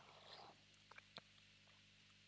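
Near silence: room tone with a faint steady low hum and a couple of faint clicks about a second in.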